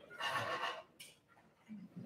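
A short, wavering burst of French horn sound lasting under a second, whinny-like, followed by a brief hiss about a second in.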